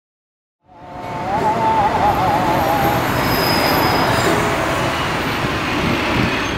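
Loud city street traffic noise that fades in about a second in, with a wavering high squeal over its first two seconds.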